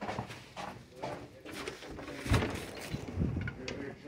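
Footsteps and a door being pushed open while walking through a corridor, a string of knocks with a loud thump about halfway through.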